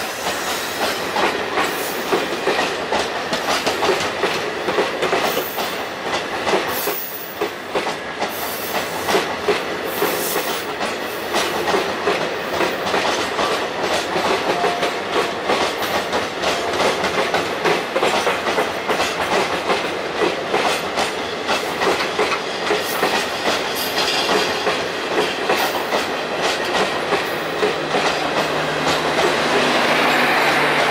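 Garib Rath express coaches rolling past at close range, their wheels clicking steadily over the rail joints over a continuous rumble. Near the end the train's generator car comes by, adding a steady low drone from its diesel generator.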